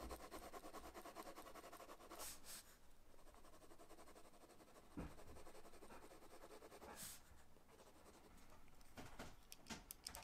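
Faint scratching of a pencil shading on sketchbook paper, in short strokes.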